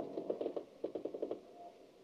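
A faint, irregular run of short clicks or knocks, several a second, quickest around the middle and fading out near the end.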